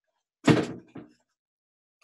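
A dull thump about half a second in, with a fainter knock about half a second after it, from objects being handled and bumped while rummaging below the desk.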